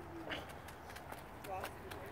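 A young child's wordless voice, two short sounds about a third of a second in and again around a second and a half in, over small crunching footsteps on playground wood chips.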